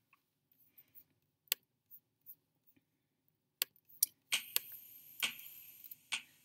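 Handling noise close to the microphone: a few sharp clicks spread over the first seconds, then steady rustling with more clicks in the last two seconds, as the recording device is touched and operated.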